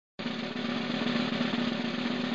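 A rapid, continuous drum roll at the start of a chutney song, coming in a moment after silence with a steady low tone held underneath.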